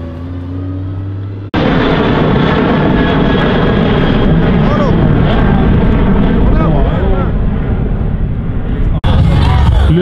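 A drift car's engine running at low revs, then, about a second and a half in, a sudden cut to the loud, steady roar of a jet airliner's engines as it climbs overhead.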